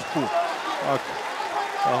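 A man's voice speaking in short bits, over a faint background of arena crowd noise.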